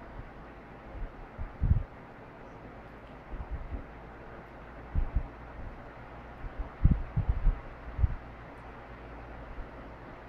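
A mid-1940s Westinghouse Power-Aire 16-inch desk fan with micarta blades, running with a steady rush of air over a faint motor hum. Its airflow buffets the microphone in short low thumps, a few early and a cluster about seven seconds in.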